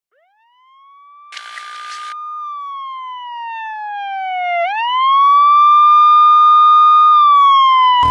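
A siren wails: it winds up from silence, holds, glides down, winds up again and holds, then begins to fall near the end, getting steadily louder. A short burst of hiss comes about a second and a half in.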